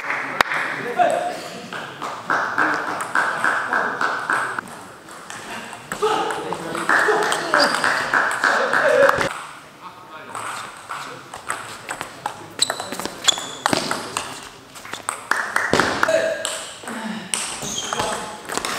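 Table tennis ball clicking off rackets and bouncing on the table, a string of sharp clicks, with indistinct voices in the hall.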